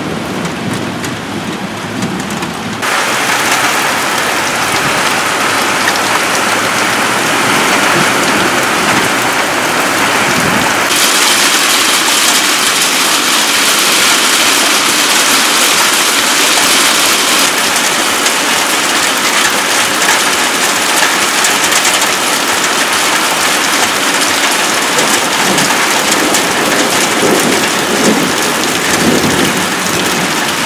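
Heavy rain pelting a glass patio table, a dense steady hiss of drops. It gets louder about three seconds in and brighter and harsher about eleven seconds in.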